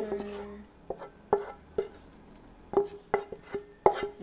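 Wooden spatula knocking and scraping against a metal frying pan as cooked fish is scraped out into a plastic bowl, about a dozen irregular knocks, each leaving the pan ringing briefly.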